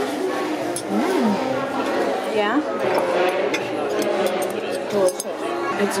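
Restaurant chatter: untranscribed background voices of people talking, with a few light clinks of tableware.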